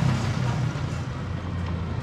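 Street traffic heard from a moving cycle rickshaw: motorbike engines running, over a steady rush of road and wind noise.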